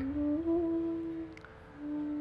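A man humming two long held notes, with a short break in between.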